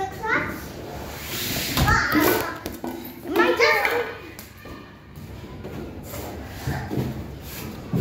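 Young children's voices exclaiming and calling out in play, in short bursts, with a single thud about two seconds in.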